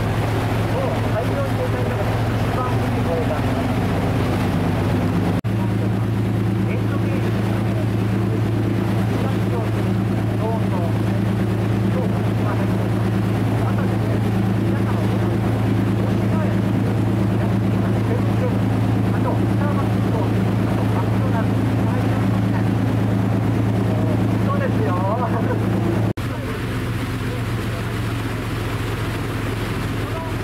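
A sightseeing cruise boat's engine heard from on board, running with a steady low drone under a wash of water and wind noise. The sound breaks off for an instant twice, about five seconds in and again near the end.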